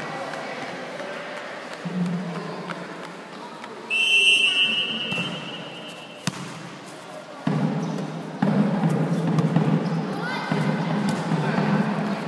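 A referee's whistle blown once for about two seconds, followed by a sharp volleyball hit. After that the players and spectators shout loudly, with the echo of a large concrete hall.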